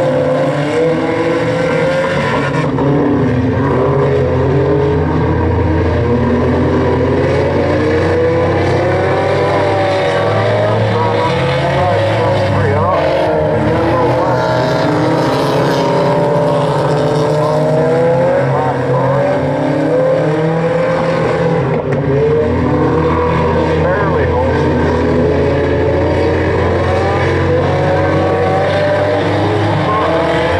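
A field of Hornet-class four-cylinder compact cars racing on a dirt oval. Several engines are heard at once, their pitch rising and falling as they accelerate out of the turns and lift going into them.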